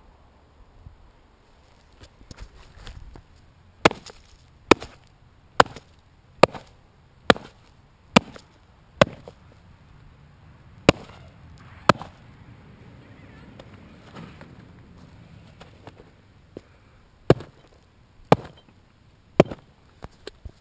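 An axe chopping down repeatedly onto a pair of canvas skate shoes lying on the ground: about a dozen sharp blows, first a quick run of seven just under a second apart, then a few more spaced out. The blows fail to cut through the shoes.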